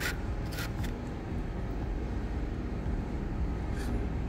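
Fingertips pressing seeds into damp sand mixed with planting gel in a plastic pot, giving a few faint, brief gritty scratches, about half a second in and again near the end. A steady low hum runs underneath.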